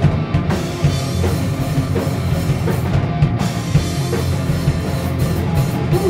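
Punk rock band playing live at full volume: a driving drum kit with guitars and bass in a dense, steady wall of sound.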